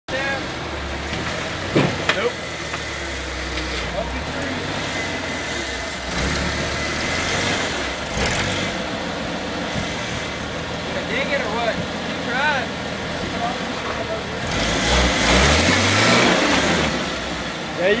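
Lifted, roll-caged Jeep's engine running at low revs as it crawls over boulders, with a couple of sharp knocks about two seconds in; about fourteen seconds in the revs rise and the engine gets louder as it climbs a rock.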